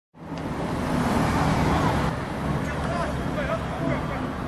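Outdoor background noise of road traffic, with faint distant voices, cutting in suddenly just after the start.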